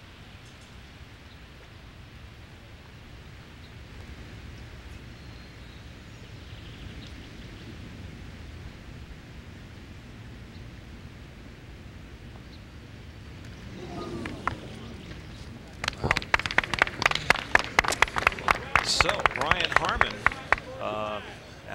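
Golf gallery around the green applauding as the hole is decided: quiet outdoor background at first, then a swell of crowd voices about fourteen seconds in, breaking into loud clapping for the last few seconds.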